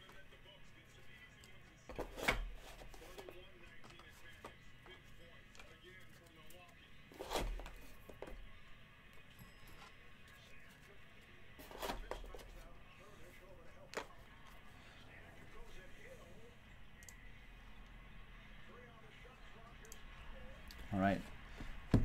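Quiet room tone with a few soft knocks spread through it, about four in all.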